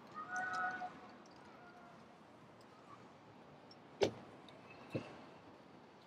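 Faint outdoor background with distant voices near the start, then two sharp knocks about a second apart, the first louder.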